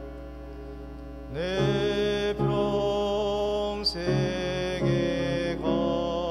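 A man singing a hymn solo in long, held phrases over piano and organ accompaniment. For the first second or so only a held accompaniment chord sounds, then the voice comes in with a scoop up to its note.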